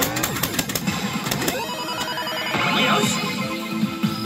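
Saint Seiya smart pachinko machine playing its electronic music and sound effects during a reach. A quick run of clicks in the first second and a half gives way to a rising sweep in the middle.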